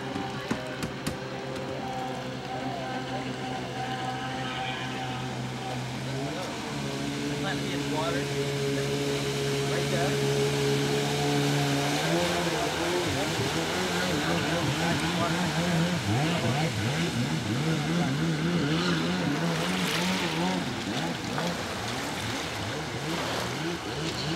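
Stand-up jet ski engine running. It holds a steady drone that steps up in pitch twice, then from about halfway the pitch rises and falls rapidly as the craft hops over the water.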